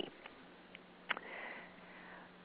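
Faint breath drawn in through the nose by a speaker pausing between sentences, preceded by a small sharp click about a second in. A faint steady low hum runs underneath.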